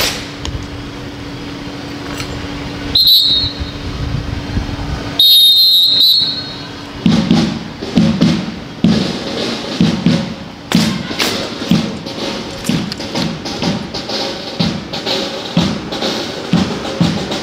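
Two loud, high-pitched whistle-like blasts over a steady low hum. About seven seconds in, a steady percussive beat of thumps starts, at roughly three beats every two seconds, like a marching cadence for an honour-guard drill team.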